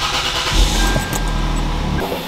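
The 2JZ-GE inline-six of a 2001 Lexus GS 300 being started: a brief crank, then the engine catches about half a second in and runs with a steady low rumble.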